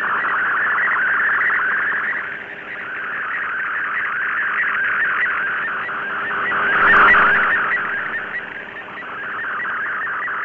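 Shortwave digital-mode signal: an MFSK64 picture transmission decoded by FLDIGI, heard as a dense band of rapidly shifting data tones over static hiss. The signal fades down twice and swells back, typical of shortwave propagation.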